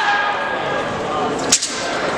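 Nandao (southern broadsword) wushu routine: a metallic ringing from the blade dies away within the first half second, then one sharp crack about one and a half seconds in.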